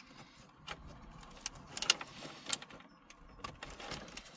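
Plastic wiring connectors and cables being handled and plugged into the back of a car stereo head unit: a scatter of sharp clicks and rattles, the loudest about two seconds in.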